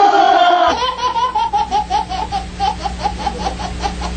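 A baby laughing hard: a long, unbroken run of quick, high-pitched 'ha' sounds, several a second, starting just under a second in after another voice cuts off abruptly.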